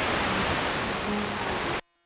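FM radio tuner playing a station: faint music under a loud, even hiss. It mutes abruptly near the end as the tuner starts seeking to the next station.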